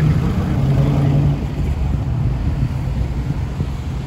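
Road traffic close by: a London black cab's diesel engine running in front of the microphone, its steady low hum fading away about a second and a half in, over a constant rumble of traffic.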